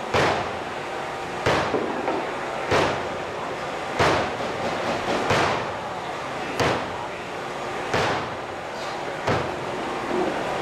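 Wet bread dough slapped down hard on a work table and folded by hand, the slap-and-fold ('old French') way of mixing, about eight slaps a little over a second apart. It is an early stage of building the gluten, with the dough still weak and tearing.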